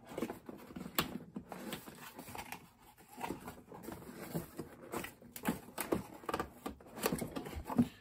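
Rummaging in a cardboard shipping box: irregular rustles, scrapes and light knocks as a small crossbow quiver is worked loose and lifted out.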